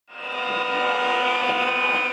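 Many horns blown together by a crowd, making one steady, loud blare of held tones that fades in at the start and holds without a break.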